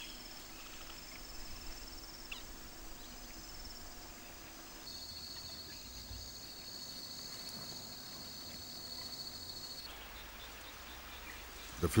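Insects trilling: a high, steady, finely pulsed buzz. A second trill a little lower in pitch comes in about five seconds in and cuts off about ten seconds in.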